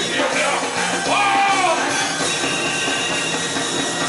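Live band playing loud rock-edged music with electric guitar and keyboards, heard from the audience; a sliding tone rises and falls about a second in.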